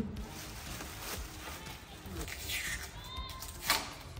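Rustling and crinkling of plastic packaging being pulled off a new motorcycle, with a sharper crinkle near the end.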